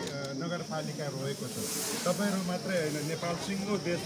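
A man's voice speaking over a steady background hiss.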